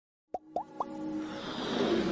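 Intro sound effects: three quick rising pops in succession, then a swelling whoosh that builds steadily louder.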